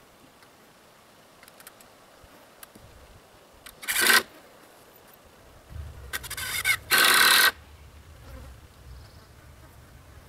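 Cordless drill driving screws into the treated-lumber frame of a solar panel rack: a short burst about four seconds in, then a longer run from about six seconds that is loudest just before it stops, about seven and a half seconds in.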